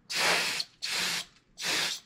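Can of compressed air (canned air duster) sprayed in three short blasts of hiss, each about half a second long.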